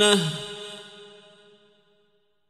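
A male reciter's voice, chanting the Quran melodically, holds a long sustained note that drops in pitch and breaks off just after the start. Reverberation then rings on and fades to silence over about two seconds, marking the pause at the end of a phrase.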